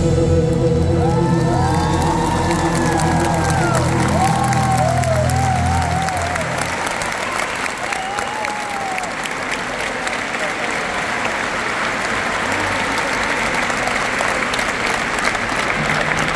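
An orchestra holds a final chord that stops about six seconds in, while a large audience calls out over it. Then steady applause from the crowd.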